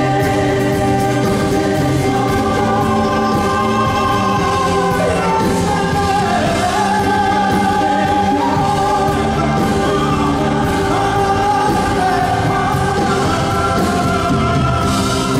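Live band music: a folk band playing with singing, held sung lines moving over guitars, keyboard and drums.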